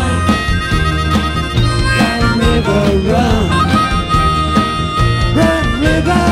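Harmonica played cupped against a microphone, with long held notes, taking a solo over a live band's backing.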